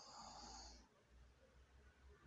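Near silence: faint room tone, with a brief soft hiss in the first second.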